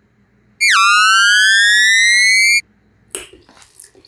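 An edited-in electronic sound effect: one loud, buzzy tone about two seconds long that dips sharply in pitch, then slides slowly back up and cuts off suddenly. A few soft clicks follow near the end.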